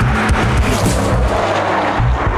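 A loud rushing, rumbling sound effect laid over the bass beat of a TV show's opening music.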